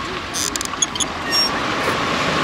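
Steady rush of wind and surf on a pebble beach, with a few sharp clicks and brief metallic squeaks as a beach lounger's fold-down sunshade is pulled down.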